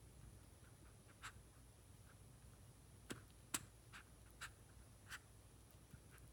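Gray squirrel grooming itself, licking and nibbling at its fur and paws: about six short faint clicks and smacks over a near-silent room, the sharpest about three and a half seconds in.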